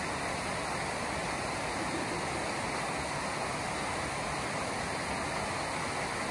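Steady rushing of a waterfall, an even roar of falling water with no breaks.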